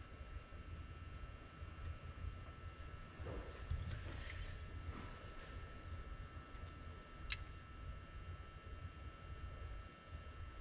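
Faint handling of a telescoping bore gauge in a steel hydraulic swivel housing while a bore measurement is taken: soft rustles and scrapes, then one sharp click about seven seconds in, over a low steady rumble.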